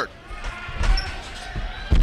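Dull thuds of wrestlers' bodies and feet on a wrestling ring, one about a second in and another near the end, over a low hum of arena noise.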